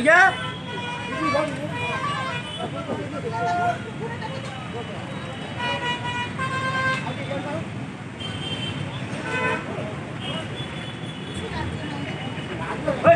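Busy road traffic with vehicle horns honking several times in short blasts, two close together about halfway through, over a steady traffic rumble and people's voices.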